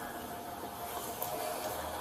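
Faint steady background hum with a thin constant tone, picked up by a police body camera's microphone beside an open car door.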